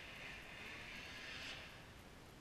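Faint, distant snowmobile engine: a high rushing sound that fades away about a second and a half in.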